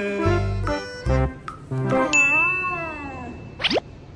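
Cartoon-style comedy sound effects over music: pitched musical notes over a deep bass, then a ringing ding held for over a second with a bending tone under it, ending in a quick rising zip.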